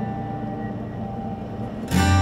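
Background music: a strummed acoustic guitar chord rings out and fades, and the next chord is strummed near the end.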